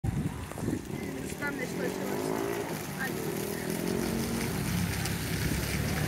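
A vehicle engine running with a steady low drone, its pitch gliding slightly about halfway through, with faint voices in the background.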